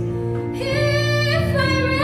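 A teenage girl singing solo with a microphone over sustained instrumental accompaniment; her sung phrase comes in about half a second in and is held.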